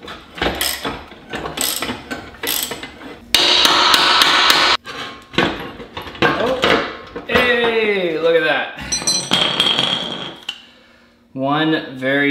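Metal knocks and clanks as hand tools strike and work a crash-damaged suspension control arm loose from a wrecked aluminium wheel. There is a run of sharp knocks, then a loud harsh scrape lasting about a second and a half, then more knocks and a creaking squeal of metal parts shifting.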